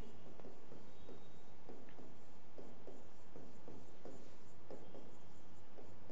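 Stylus writing on an interactive display screen: faint, irregular short taps and scratches, several a second, one for each pen stroke of the handwriting.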